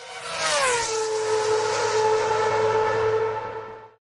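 Racing car engine sound effect. Its pitch drops during the first second, then holds steady at high revs before fading out at the end.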